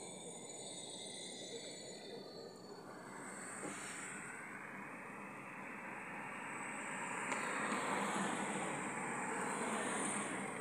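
Steady road and tyre noise of a car driving through town traffic. The rush swells in the second half.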